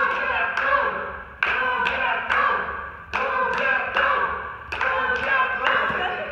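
Sharp claps repeating unevenly, about one to two a second, each ringing out, with voices in the background.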